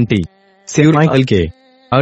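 A synthesized text-to-speech voice speaking Hindi in short phrases separated by brief pauses.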